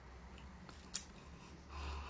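A thin slice of ham being pulled and torn apart by hand, faint soft handling with one sharp click about a second in.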